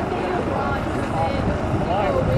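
Indistinct voices of nearby spectators talking over a steady low rumble of wind buffeting the microphone.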